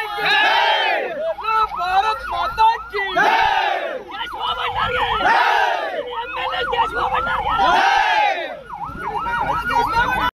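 Vehicle siren with a fast warbling note, about four sweeps a second, broken by louder slow rising-and-falling sweeps about every two and a half seconds, over crowd voices.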